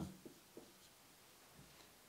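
Faint strokes of a marker pen on a whiteboard in the first half second, then near silence: room tone.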